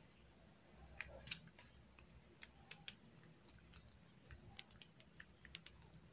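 Near silence with faint, scattered small clicks and ticks, starting about a second in: hands handling a small circuit board and fitting stripped power-cable wire ends into a screw terminal block.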